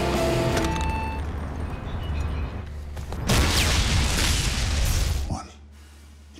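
Film sound effect of a hand grenade exploding about three seconds in: a sudden loud blast with rumbling debris that cuts off abruptly after about two seconds. Sustained film-score tones fade out before it.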